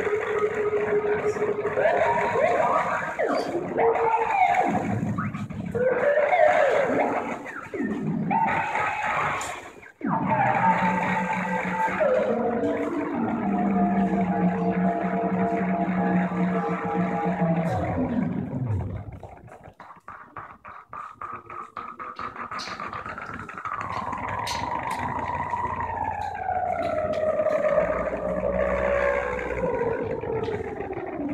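Live electronic synthesizer music from a homemade cardboard-cased synth built on an Axoloti board, a hardware version of the Metaphysical Function synth, played by hand on its knobs. It sounds distorted, with held pitched tones and chords that slide up and down. It cuts off suddenly about ten seconds in, turns quieter with a fast clicking stutter around twenty seconds, then ends with slow falling glides.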